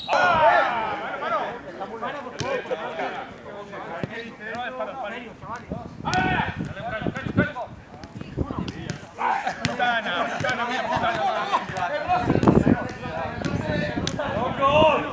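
Footballs being kicked on an artificial pitch, sharp thuds every second or two, amid men calling out to each other throughout.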